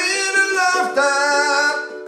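A man singing two long held notes, accompanied by a strummed ukulele.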